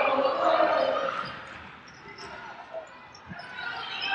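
Arena ambience during a basketball game: crowd noise that fades after about a second, then quieter court sounds with a ball bouncing and a low thud about three seconds in.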